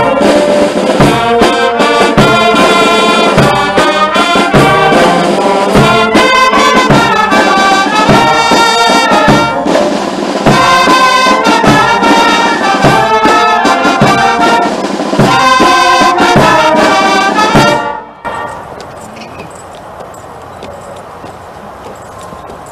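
Military brass band playing, trumpets, trombones and sousaphones together at full volume. About four seconds before the end the music breaks off suddenly, leaving only faint background noise.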